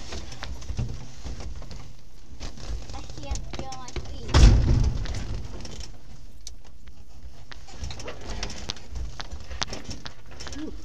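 Wind rumbling on the microphone, with scattered light clicks and knocks from the ultralight's open cockpit as the occupants move about and climb out. A heavier rumbling thump comes about four and a half seconds in.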